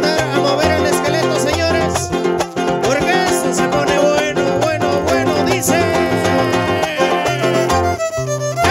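Live huapango music from a huasteca string band: a fiddle playing a sliding, wavering melody over strummed guitars and a bass line that steps from note to note. Near the end the fiddle holds one long high note.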